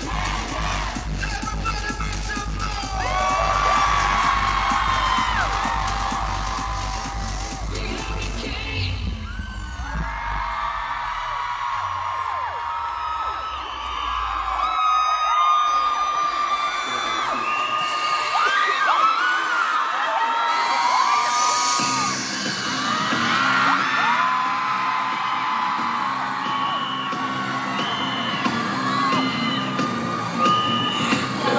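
Concert crowd screaming and cheering over loud music from the PA. A heavy bass beat runs for roughly the first nine seconds and then drops away, leaving many high held screams. A lower beat comes back about two-thirds of the way through.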